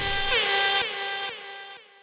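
Closing notes of a hip hop track: a held, horn-like synth chord struck about four times, each strike dipping in pitch as it starts, fading away by the end.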